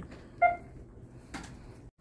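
A single short beep about half a second in, then a faint click, over low store background noise; the sound drops out just before the end.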